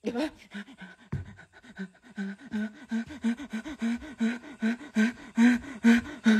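A man panting fast and hard, short voiced breaths about three a second that grow louder toward the end. A dull bump about a second in.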